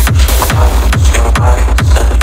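Electronic techno remix playing: a fast, steady four-on-the-floor kick drum over a deep sustained bass, with short bright percussion hits above.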